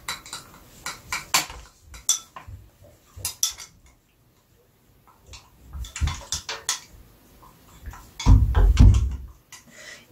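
Metal spoon clinking and scraping against a glass beaker as a sunscreen emulsion of oil and water phases is stirred by hand; the clicks come irregularly with a short pause midway. Near the end come a few dull low thuds, the loudest sounds here.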